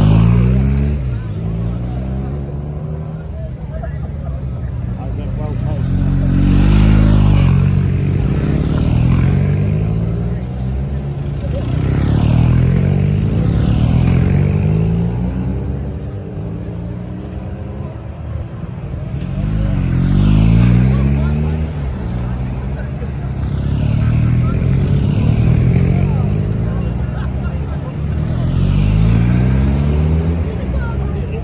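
Motor vehicles passing close by one after another, each one's engine and tyre noise swelling and fading, about every six seconds.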